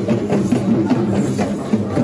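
Drum-led music: a fast, steady beat of roughly five strokes a second with a pitched melody line over it.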